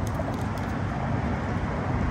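Steady low rumbling outdoor background noise, with no distinct event standing out.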